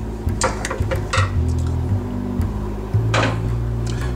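Background music with a low bass line, over which a few clanks and knocks of a stainless steel pot and utensils being handled sound out, the loudest about three seconds in.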